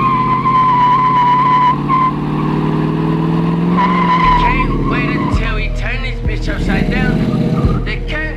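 Chevrolet Monte Carlo doing donuts: the engine revs up and the rear tires squeal in a wavering high note as the car slides around. The squeal is heard in the first two seconds and again briefly around the middle.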